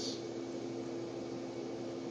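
Steady background hum of several low tones with a faint hiss: machine room tone, with no distinct event.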